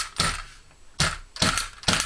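Muzzle of a Polytech M305 (M1A-type) rifle being tapped down on a soft surface: about five sharp knocks with a short metallic ring, irregularly spaced. The taps jar the barreled action loose from its freshly epoxy-bedded stock.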